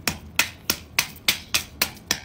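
Claw hammer striking a block of ice in quick, even blows, about three sharp knocks a second, chipping it apart.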